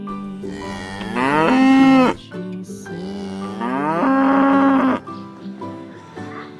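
Cattle mooing: two long moos about a second and a half apart, each rising in pitch and then held steady.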